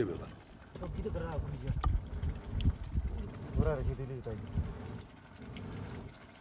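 Short bits of a man's speech, about a second in and again near the middle, over a steady low rumble of background noise.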